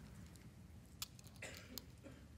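Faint crinkle and a few small clicks of the plastic film being peeled back from a prefilled communion cup's wafer layer, over near-silent room tone.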